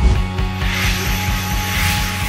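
Intro theme music for a TV programme, driven by a rapid, even ticking pulse, with a rising whoosh that swells from about half a second in as a logo sound effect.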